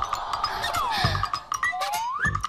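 Cartoon-style comic sound effects: a quick run of light ticks with a whistle sliding down in pitch, then another sliding up near the end.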